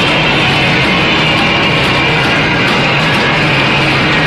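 Loud live band music, with a drummer playing a full kit and cymbals, dense and unbroken.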